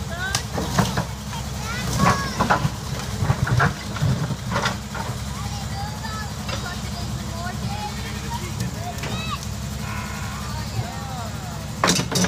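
A backhoe's diesel engine runs steadily while its bucket smashes a wrecked car. Several sharp crashes and crunches of sheet metal come in the first few seconds, and another heavy crunch comes near the end.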